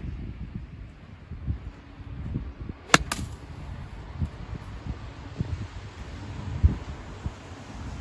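A golf iron striking a ball once, a single sharp crack about three seconds in, over a low, uneven rumble of wind on the microphone.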